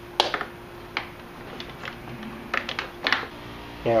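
Scattered sharp plastic clicks and taps as wiring connectors are handled and unplugged at the back of a headlight assembly, the loudest just after the start and a few more in quick clusters later.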